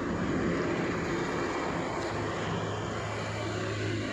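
A steady engine drone: a low hum under a wide rushing hiss, the hum growing stronger in the second half.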